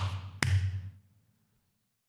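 A single sharp click about half a second in, over a low hum that fades away. From about a second in the sound drops out to dead silence.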